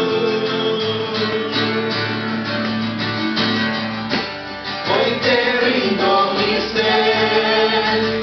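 Acoustic guitar strummed live, with singing voices coming in about five seconds in as a worship song goes on.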